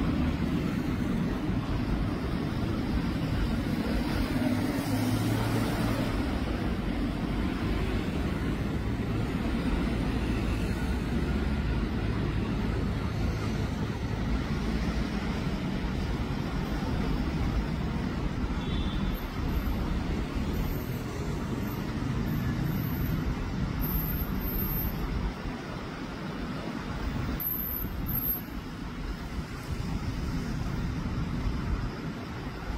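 Steady road traffic at a busy city intersection, with car and truck engines running close by.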